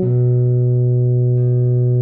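Euphonium holding one long low note for about two seconds over a keyboard backing track, whose chord changes about a second and a half in.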